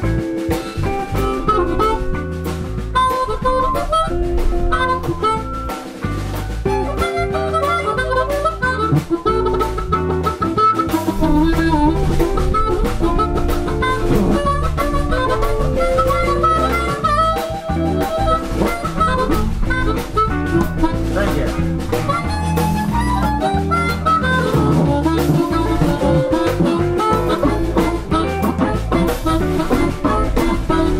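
Live electric blues band playing an instrumental stretch with drums, bass and a lead line of quick melodic runs, which an electric guitar takes after a call for a guitar solo.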